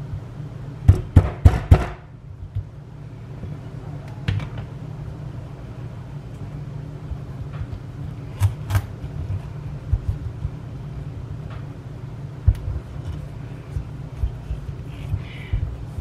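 Kitchen knife being forced into the hard rind of a whole acorn squash: a quick run of four sharp knocks about a second in, then scattered single knocks as the blade is worked down, over a steady low hum. The squash is tough to cut.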